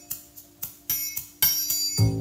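Song intro played from a vinyl record over hi-fi loudspeakers: about three bright, ringing strikes over a held low tone, with bass and guitar coming in at the very end.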